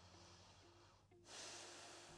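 Faint breathing of a person holding a deep stretch: a soft breath in, then a stronger breath out starting about a second in. Quiet background music with short, soft repeated notes sits underneath.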